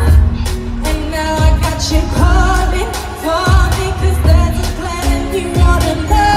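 Live pop music through an arena sound system: a singer's lead vocal over a beat, with deep bass hits that slide down in pitch several times.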